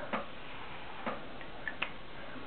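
Quiet room hiss with a few soft ticks, the clearest about a second in and again near the end.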